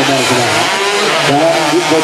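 Racing underbone motorcycle engines revving, their pitch rising and falling, with a man's voice talking over them.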